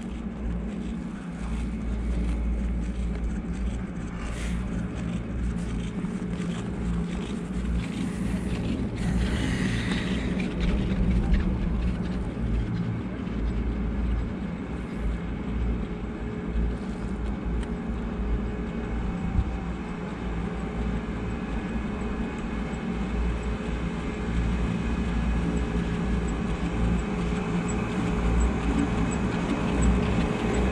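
Riding a Riblet fixed-grip double chairlift: a steady low mechanical rumble from the moving chair and haul rope, with a faint steady hum, getting a little louder near the end as the chair reaches the top terminal.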